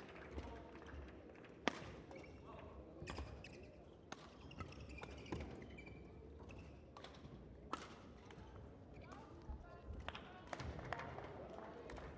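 Badminton rally: rackets striking the shuttlecock in sharp, irregular hits about once a second, heard faintly over low voices in a large hall.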